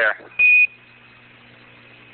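A single short, steady, high beep about half a second in: a Quindar tone on the Apollo air-to-ground radio loop, the signal tone sent when the mission radio link is keyed. It is followed by faint steady radio hiss and low hum.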